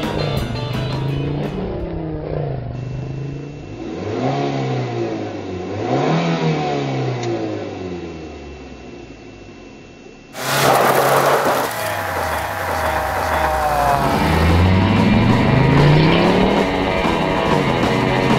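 Car engine revving hard several times, its pitch climbing and falling with each rev. About ten seconds in comes a sudden loud burst of noise, then the revs climb again.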